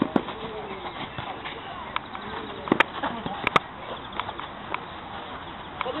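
A football being kicked around on an artificial-turf five-a-side pitch: several sharp, separate thuds over a steady outdoor hiss, with faint distant players' voices.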